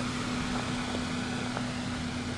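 A steady mechanical hum with a constant low tone, like an engine or machine idling.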